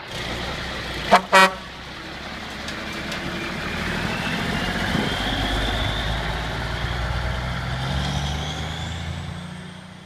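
Custom 1996 International big rig with a Cummins 855 diesel: two short horn blasts about a second in, then the diesel engine running as the truck pulls away, with a whine rising in pitch over it, fading out near the end.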